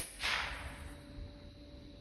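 .177 pellet air rifle firing once: a loud, sharp crack right at the start, followed by a rushing noise that fades over about half a second.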